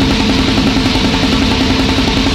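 Grindcore recording: loud, dense distorted electric guitar and drums playing a fast, even rhythm over a held low note.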